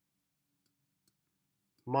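Near silence with two very faint ticks, then a man's voice starts speaking near the end.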